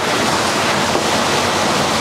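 Steady, loud rush of splashing water as a fish is netted and moved into a plastic tub of water.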